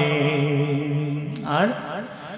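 A man singing a Bengali ghazal, holding a long note at the end of a line that fades away. Near the end comes a short rising vocal slide, which then dies down.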